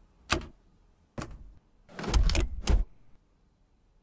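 Hard plastic clicks and clunks from a Dyson cordless stick vacuum being handled: a sharp click, another about a second later, then a few louder clunks between two and three seconds in.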